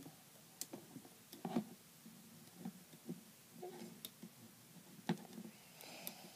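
Faint, scattered clicks and taps of handling: a rubber band being wrapped with a metal hook onto the pegs of a plastic rainbow loom, with a few separate clicks spread a second or so apart.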